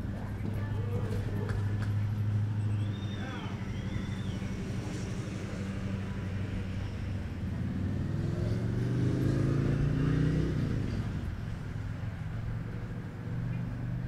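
A motor vehicle engine running with a low hum, rising in pitch as it speeds up for a few seconds about halfway through.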